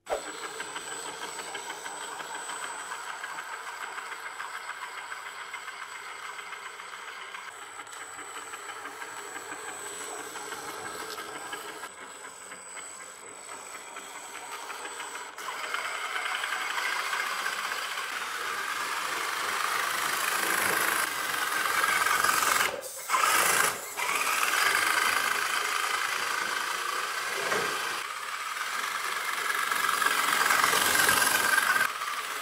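Electric drive motor and gearbox of a 1:10 scale RC crawler whirring steadily as it drives, louder from about halfway through and cutting out briefly twice about three-quarters of the way in.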